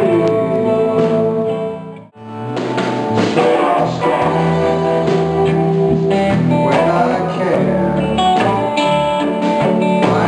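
Band music with guitars; the sound drops out briefly about two seconds in, then comes back.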